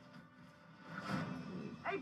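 Movie soundtrack at low level: a soft rushing swell of sound effects builds about a second in, then a young man's voice says "Hey" near the end.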